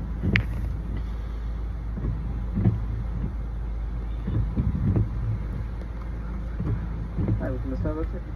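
Car engine idling, a steady low rumble heard inside the cabin, with faint voices over it and a short burst of speech near the end.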